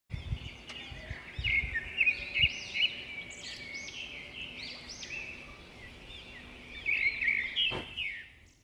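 Birds chirping, with many short calls overlapping throughout. There are a few low bumps in the first two or three seconds.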